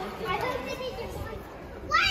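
Children's voices: faint background chatter, then a child's loud, high-pitched voice breaking in just at the end.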